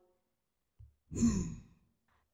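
A person's single short sigh about a second in, breathy with a falling pitch, in an otherwise near-silent pause.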